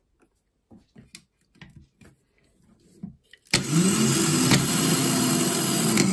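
Pre-engaged car starter motor powered on the bench: a few faint clicks, then about three and a half seconds in the solenoid engages with a sharp clunk and the DC motor spins up into a loud, steady whirring whine as the pinion gear throws out.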